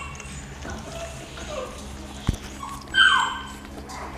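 Young puppies whining while feeding from a dish of dry kibble: a few short, high, falling whines, the loudest about three seconds in. A single sharp click sounds a little after two seconds.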